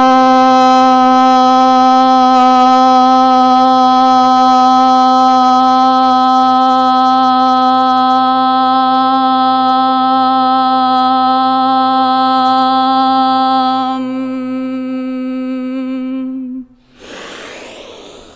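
A woman's voice chanting a single long, steady-pitched Om. Near the end it softens into a closed-lip hum and stops, followed by a short breath.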